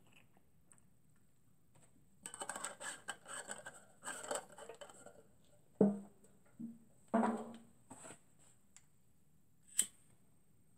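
Small brass alcohol burner and its cap being handled on a wooden base: a rattly run of small metal clicks and scrapes for about three seconds, then a few separate knocks, and one sharp click near the end.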